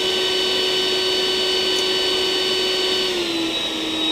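Makita DVC260 36V brushless cordless backpack vacuum running steadily on its highest-suction normal mode with an even motor whine. About three seconds in, it switches down to its low-suction quiet mode and the pitch of the whine drops slightly.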